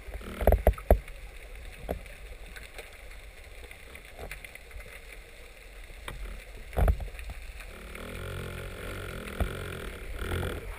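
Muffled underwater sound through a camera housing: a cluster of dull thumps about half a second in and another near seven seconds, with scattered small clicks. A low rumble builds near the end.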